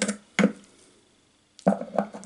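Short, sharp plastic knocks and clatter from a food processor as its chopping blade assembly is lifted out of the bowl and the parts are handled: one knock about half a second in and a louder one near the end.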